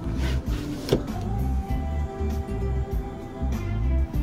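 Music with a steady bass beat playing from the car's stereo, with a single sharp click about a second in.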